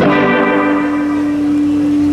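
Amplified electric guitar struck once and left to ring. The bright attack fades quickly into a single note that sustains steadily.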